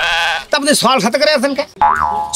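Men talking, with a high, quavering vocal sound in the first half second and a rising pitched glide near the end.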